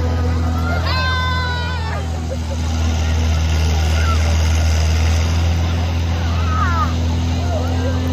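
A steady low motor drone runs under children's voices and chatter, with a high child's squeal about a second in and another shorter one near seven seconds.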